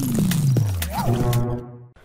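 A news channel's logo sting: a short electronic music-and-effects stinger with a deep tone sliding steadily downward and a few sharp clicks. It fades out about a second and a half in.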